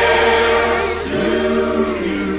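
Music: a choir singing long held chords, moving to a new chord about a second in.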